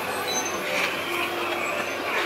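Steady background noise in a busy indoor ride loading station: a babble of distant voices over the mechanical running of the ride system.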